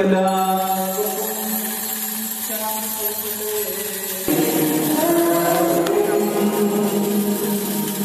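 Slow church chant: long held sung notes over a steady low drone, with a louder phrase coming in about four seconds in.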